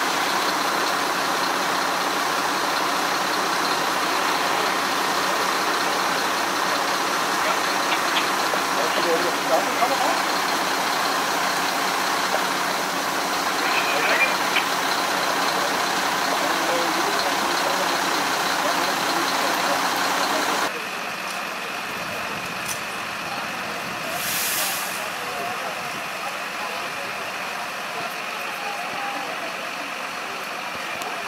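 Fire trucks idling steadily, with faint voices. About two-thirds of the way in, the sound drops abruptly to a quieter, thinner background.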